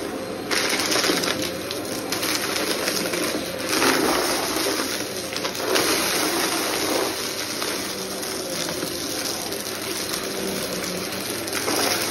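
Upright vacuum cleaner running steadily on carpet, with irregular rattling and crackling as small debris is sucked up through the cleaner head.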